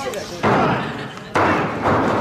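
Two hard slaps on a wrestling ring mat, about a second apart, each followed by a rumbling haze from the ring and hall. This is the referee counting a pin attempt to two.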